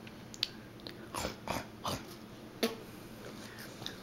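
A small child chewing crackers, with a run of short crunches and mouth clicks at uneven intervals, about half a dozen in the first three seconds and a few more near the end.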